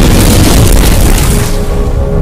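Cinematic intro sound effect: a loud, deep explosion boom that dies away near the end as a held musical tone comes in.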